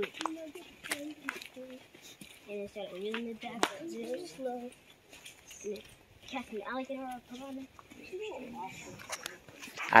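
Quiet, indistinct talking of people a little way off, with a few sharp clicks of footsteps and walking sticks on a dry, leaf-covered trail.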